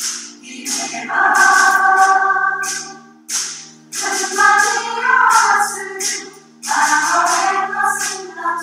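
Mixed adult choir singing in English in three phrases, with short breaks about three seconds in and again near six and a half seconds, over a sustained accompaniment that holds through the breaks.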